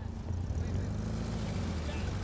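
Volkswagen Type 2 bus's air-cooled flat-four engine pulling away from the curb, a steady low drone that grows a little louder about a third of a second in.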